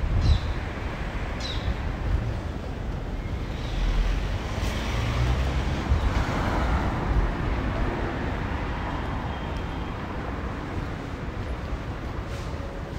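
Street ambience with a car passing: its tyre and engine noise swells in the middle and slowly fades, over uneven low rumble from wind on the microphone. A short chirp, like a bird's, sounds just after the start.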